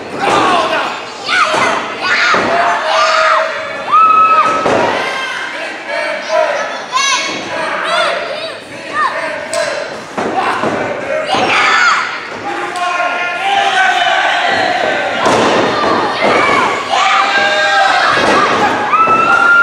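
Wrestlers' bodies hitting the ring canvas and ropes in repeated thuds and slams, under a crowd shouting and yelling throughout, with some long held yells.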